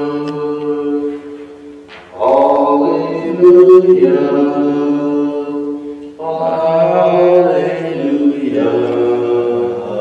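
A single voice chanting slowly in long held notes, in about four phrases: the sung Gospel acclamation before the Gospel reading.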